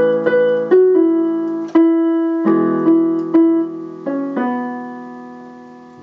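Casio lighted-key electronic keyboard on a piano voice playing the closing phrase of a song: a right-hand melody over held left-hand chords, about nine notes and chords struck in the first four and a half seconds, the last chord left to ring and fade.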